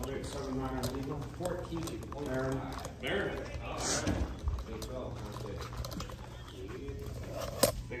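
Quiet, indistinct talking over a steady low hum, with one sharp click near the end.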